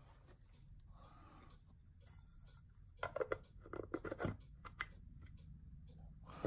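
Faint room tone, then about three seconds in a brief cluster of light clicks and rustles from hands handling small tools and items on a hobby workbench, followed by a few scattered ticks.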